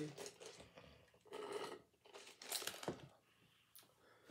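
Mouth sounds of eating and drinking: sipping soda through a straw, swallowing and chewing, in three or four short spells with a sharp click about three seconds in.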